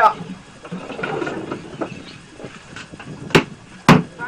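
Brief talk, then two sharp knocks about half a second apart near the end, the loudest sounds here.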